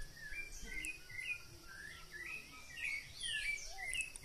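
Wild songbirds singing: a string of short, varied whistled phrases that grows denser and louder near the end.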